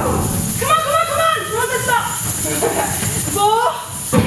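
A person's voice sweeping up and down in pitch in two phrases, a longer one about a second in and a short rising one near the end, with the music's beat dropped back.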